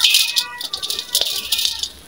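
A dry, crumbly sand-cement chunk crushed by hand over a steel bowl gives a dense gritty crunching and crackling. The grit pours back into the bowl, and the sound is loudest at the start and fades off near the end.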